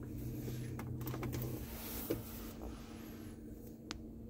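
Steady low hum inside a car's cabin with its systems running, with faint clicks and rustles and one sharp click near the end.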